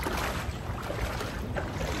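Wading footsteps through shallow lake water, feet in water shoes splashing with each step.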